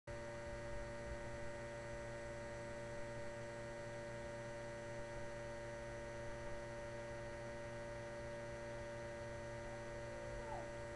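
A steady electrical hum with several constant whining tones over it, unchanging throughout.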